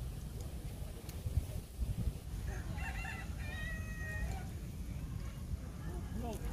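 A rooster crows once, faintly, about two and a half seconds in, a drawn-out call of under two seconds. Under it runs a steady low rumble, with two low thumps in the first two seconds.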